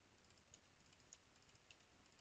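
A few faint computer keyboard keystrokes, short clicks about half a second apart, against near silence.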